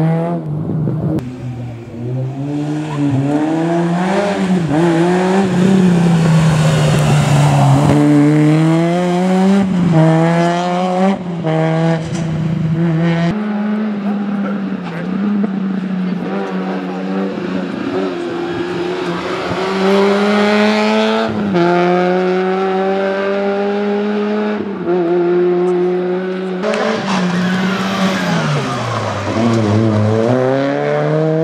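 Peugeot 106 N2 rally car's four-cylinder petrol engine worked hard on a special stage. The revs climb repeatedly and fall sharply at each gear change or lift, several times, with a deep drop and fresh climb near the end, as the car brakes for a hairpin and accelerates out.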